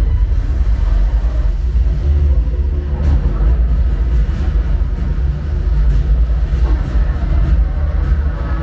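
Movie soundtrack played loud through a Sonos Arc soundbar and Sonos Sub, recorded in the room: music and action sound effects over a heavy, continuous deep bass rumble.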